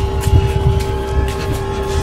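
Wind buffeting and handling rumble on a handheld camera microphone while running along a path, with quick footfalls and a steady held tone underneath.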